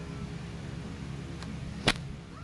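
A single sharp click near the end, with a fainter one just before it, over a steady low hum.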